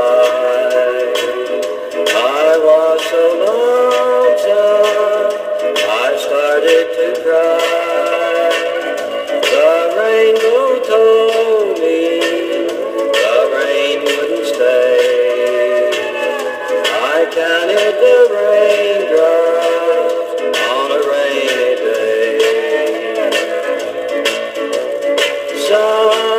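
Music from a 7-inch vinyl single playing on a turntable: a melody line of gliding, bending notes over steady accompaniment. The sound is thin, with almost no bass.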